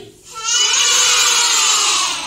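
Young children shouting in one long, loud, high-pitched cry, starting about half a second in and lasting about a second and a half.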